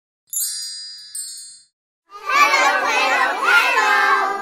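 Two bright chime dings, the second softer, each ringing and fading. After a short pause comes a louder burst of children's voices calling out together, as in an animated channel intro jingle.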